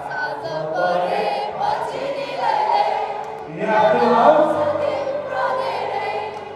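Live amplified singing: a male singer sings into a handheld microphone over a backing band's music, with many voices singing along.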